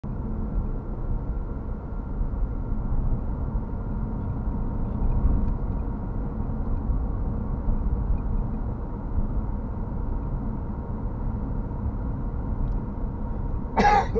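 Steady low rumble of a car driving, heard from inside the cabin and muffled, with little above the low and middle range. A short sharp noise comes right at the end.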